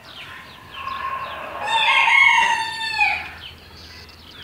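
A rooster crowing: one long crow that starts about a second in, swells to its loudest in the middle and drops away just before the end. Short, high chirps repeat faintly throughout.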